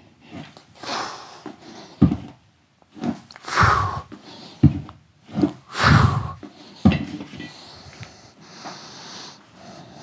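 Sharp, forceful exhalations in time with hardstyle swings of a loaded diving weight belt, about one every one to two seconds with a short dull knock at several of them. They end about seven seconds in, after which it is quieter.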